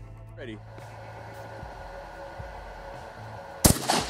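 A Benelli Nova 12-gauge pump-action shotgun fires a single solid brass slug: one sharp, loud report about three and a half seconds in.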